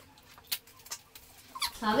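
A few faint clicks and taps from hands smoothing sticky tape down over tin foil in a cardboard box, then a woman's voice starting near the end.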